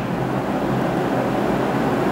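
Steady, even hiss of room background noise in a pause between speech.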